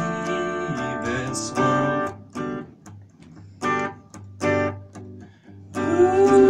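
Electric guitar playing chords with no singing: held chords for about two seconds, then a string of short, separate chord hits with pauses between them, before steady playing resumes near the end.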